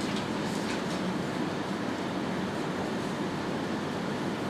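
Steady low rumbling room noise in a meeting room, with no speech.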